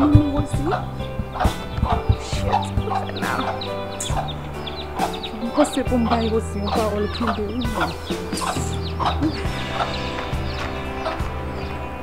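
Chickens clucking repeatedly in short calls over background music with a sustained bass line that shifts every second or two.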